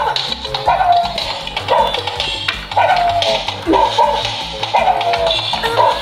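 Poppy the Booty Shaking Pug, a battery-powered Zuru Pets Alive toy dog, playing its dance song: a steady beat with short yapping barks that fall in pitch, about one a second.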